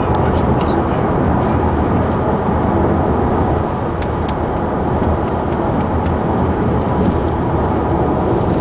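Steady road and engine noise inside a moving car's cabin, with a few faint clicks.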